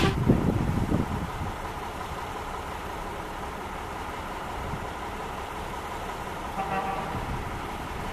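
Distant SU42 diesel locomotive running as it slowly approaches with a passenger train, heard as a steady low rumble under wind. The intro music fades out in the first second, and a brief higher tone sounds about seven seconds in.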